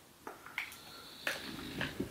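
A few small clicks and taps, spread out, from a MAC Soft and Gentle highlighter compact and makeup brush being handled: the lid opened and the brush worked in the powder.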